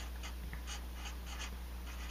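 Marker tip writing on paper as letters are printed by hand: a quick run of short, irregular strokes.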